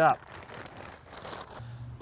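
Plastic bag of Miracle-Gro potting mix crinkling as soil pours out of it, an irregular crackly rustle that stops shortly before the end.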